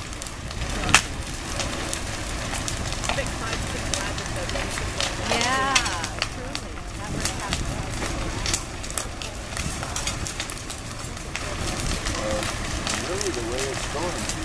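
A house fire burning hard, with a continuous rush and many crackles and pops, and one sharp crack about a second in.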